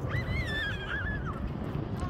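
Wind rumbling on the microphone. A single high, wavering cry lasts about a second and a half from just after the start.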